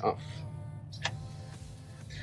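A light click of the new distributor's red plastic cap being handled after it is lifted off, about a second in, over a faint steady low hum.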